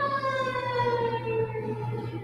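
Siren wailing: one pitched tone falling slowly and steadily, fading away near the end.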